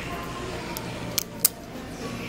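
Two sharp clicks about a quarter second apart, a plastic clothes hanger knocking against a metal clothing rack as an outfit is hung back, over a steady store background murmur.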